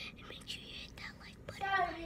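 A person whispering, with a short voiced word near the end.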